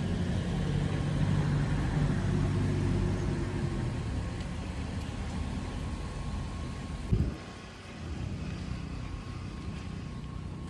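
Outdoor road-traffic sound: a motor vehicle's engine rumbling, strongest in the first few seconds and then easing off, with a brief thump about seven seconds in.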